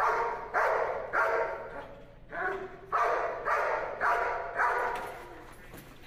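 German Shepherd barking repeatedly at a protection helper holding a bite sleeve, about two barks a second, growing fainter near the end.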